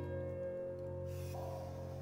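Slow background piano music: a held chord rings on and fades, with a brief soft hiss in the second half.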